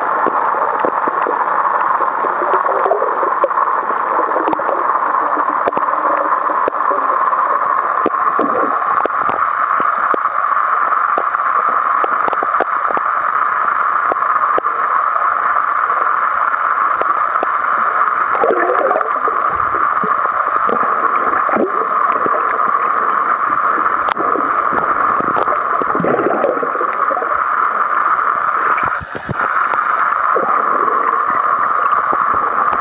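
Steady rushing, gurgling water noise, with a few short wavering sounds rising out of it now and then.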